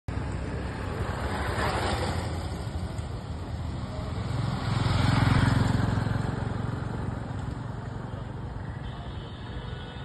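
Motor vehicles passing on the road, the sound swelling and fading twice, loudest about five seconds in.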